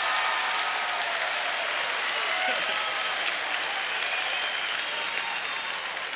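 Large audience applauding, with laughter and scattered voices through it, tapering off slightly near the end.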